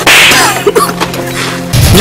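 Dubbed fight sound effects: a sharp swish-and-smack hit at the very start and another heavy hit near the end, over background music with steady held tones.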